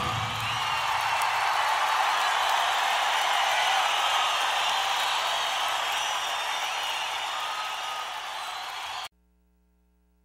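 Audience applauding and cheering at the end of a live rock song, fading slowly, then cut off abruptly about nine seconds in.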